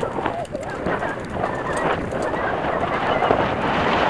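Mountain bike descending a dirt forest trail: steady tyre noise on loose ground with frequent clicks and knocks from the bike rattling over bumps.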